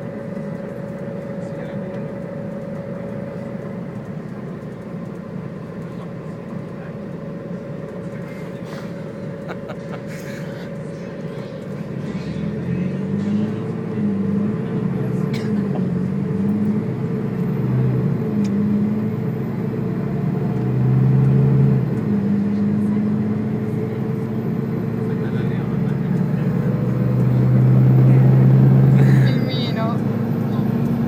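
Bus engine and road noise heard inside the passenger cabin, a steady hum in the first half; from about twelve seconds in the engine note shifts up and down in steps and grows louder, peaking near the end.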